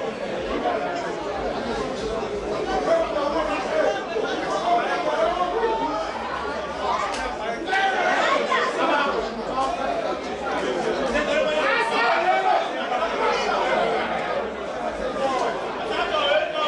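Several people talking at once in a steady run of overlapping chatter, with no single voice standing out.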